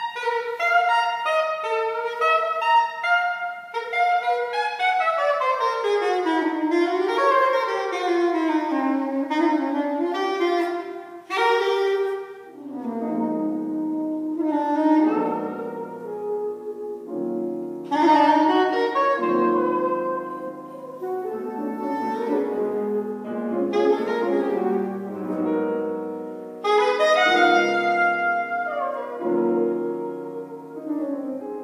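Saxophone playing fast runs of notes, including a long descending and rising line, joined by piano chords about twelve seconds in.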